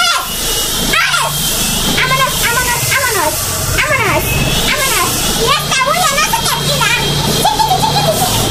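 Speech: a woman talking in an animated voice, her pitch swinging widely up and down.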